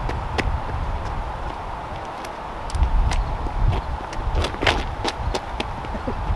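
Wind buffeting the microphone in uneven gusts, with a scattering of light, sharp ticks and taps at irregular intervals.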